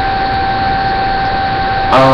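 Steady background noise through a webcam microphone: an even hiss with a constant high whine under it.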